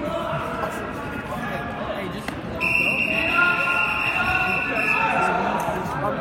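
Scoreboard buzzer sounding one steady high tone for about two and a half seconds, starting a little before halfway through, marking the end of a wrestling period. Spectators' voices go on underneath.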